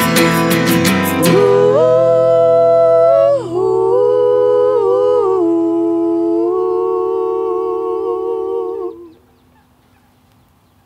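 An acoustic guitar is strummed quickly for about a second and then stops. Three voices then sing a wordless close harmony unaccompanied, moving through a few held chords to a final chord that ends about nine seconds in.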